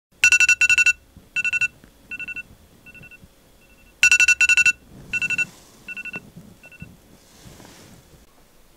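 iPhone alarm ringing: clusters of rapid electronic beeps that start loud and fade over about four seconds. The cycle plays twice, then stops about seven seconds in as the alarm is turned off.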